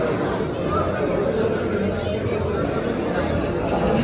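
Crowd chatter: many people talking at once in a large hall, overlapping voices with no single clear speaker.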